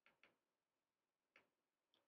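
Near silence, with four very faint, short keyboard clicks.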